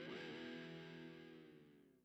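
Recorded rock music on a hi-fi system: a distorted electric guitar chord rings out and fades away, dying to silence about a second and a half in.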